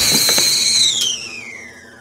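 A whistling-kettle sound: a high, steady whistle that slides down in pitch and fades away over the second half.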